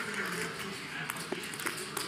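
Poker chips clicking lightly a few times as a player handles his stacks, over faint murmured talk around the table.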